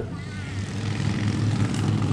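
A low, steady engine drone that grows louder over the two seconds.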